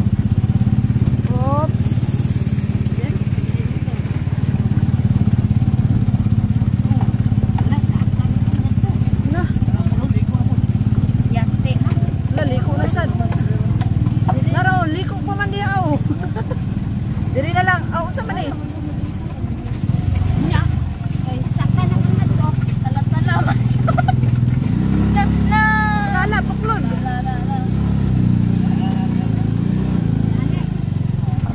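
Motor vehicle's engine running steadily, heard from inside the vehicle as it travels, with voices calling out briefly a few times.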